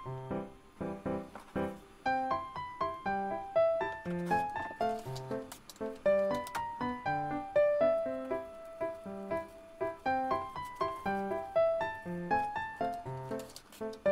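Background music: a light tune of short, quick notes running on without a break.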